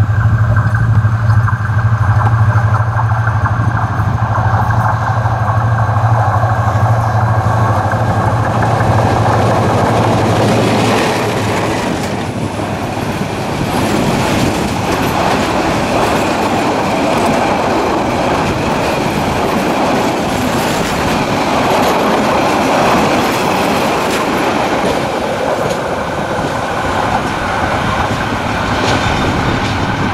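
Bangladesh Railway diesel-electric locomotive passing close through a station without stopping, its engine droning loudly for about the first ten seconds. Then the passenger coaches rush by with their wheels clattering over the rail joints.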